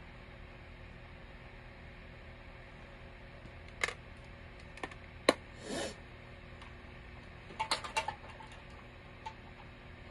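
Makeup containers and tools being handled on a tabletop: a scattering of sharp clicks and clacks about four seconds in, the sharpest a little past five seconds with a brief rustle just after it, and another cluster near eight seconds, over a steady low hum.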